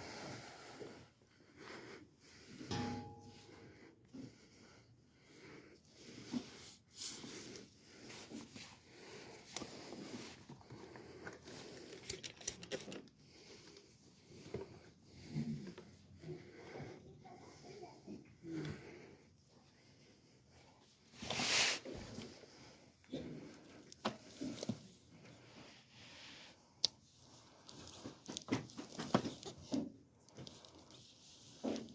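A sigh, then a quiet room with scattered small knocks and rustles of a handheld phone and books being handled on a shelf. There is a short louder rush of noise about two-thirds of the way through, and a cluster of sharp clicks near the end as a hardback is pulled from the shelf.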